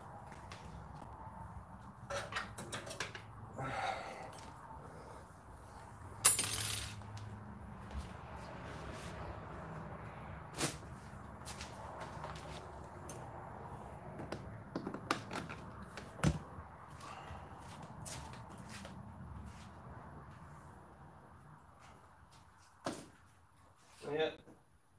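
Handling noise from setting up a battery charger: scattered clicks and knocks and rustling as an extension cord is unrolled and the charger is connected, with one louder, brief rustling scrape about six seconds in.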